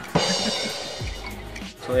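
A metal spoon clinks against a frosted glass beer mug while stirring a drink, a sharp ring that fades within about a second, over background music with a steady drum beat.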